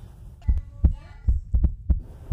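A low, heartbeat-like thumping beat, the thumps coming in pairs about once a second. A short high electronic tone sounds about halfway through.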